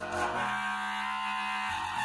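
Homemade pipe wind instrument with a curved metal neck sounding one long held note rich in overtones. It starts abruptly, holds steady, and breaks into a falling slide at the very end.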